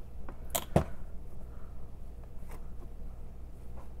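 Two sharp clicks in quick succession in the first second, the second the louder: a plastic brush cap being set back onto a small glass bottle. A few faint ticks follow.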